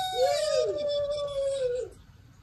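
A few adult voices cheering a long, drawn-out "woo!" together, overlapping and sliding up into a held note that stops abruptly near the end.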